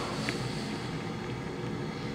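Steady low background hum with a faint click about a quarter second in.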